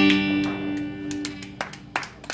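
Final strummed chord on an acoustic guitar ringing out and fading, the end of a song. Near the end, a few scattered hand claps begin.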